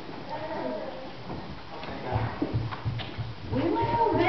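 Wavering vocal sounds without words, most likely children's voices, with a run of soft, evenly spaced low thumps starting about two seconds in.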